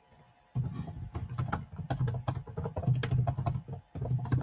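Typing on a computer keyboard: a fast, irregular run of keystrokes that starts about half a second in and stops just before the end.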